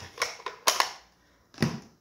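Plastic case of a Stampin' Up ink pad being snapped shut: a few sharp clicks, the two loudest close together a little under a second in, then a duller knock near the end.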